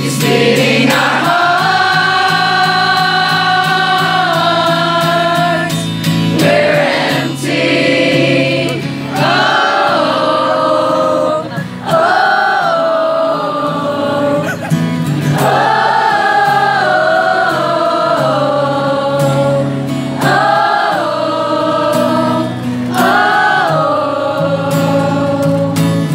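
A crowd of fans singing a pop-rock song together like a choir, in long held phrases over a steady low backing.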